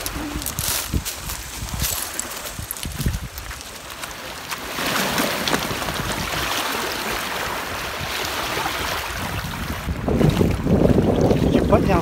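Wind buffeting the microphone over small lake waves washing onto a gravel shore. The sound grows louder and busier near the end as water churns around an inflatable kayak being boarded.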